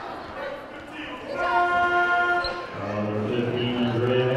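Gym scoreboard horn sounding one steady blast of about a second, over the noise and voices in the gymnasium.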